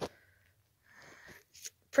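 A faint, short breath through the nose about a second in, followed by a tiny click, in an otherwise quiet pause.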